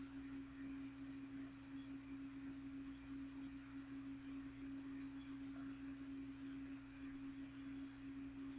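Faint, steady hum with one pure tone held at an unchanging pitch, a lower hum and light air noise beneath it, as from a box fan running.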